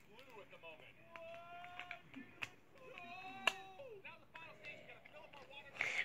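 A child's voice, soft and drawn out, heard twice, with a few light clicks from small items and a plastic cup being handled.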